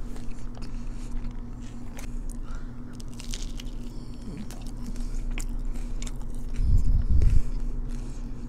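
Close-miked biting, crunching and chewing of a Korean corn dog's crispy coating, with many sharp crackly clicks. A brief louder low rumble comes near the end.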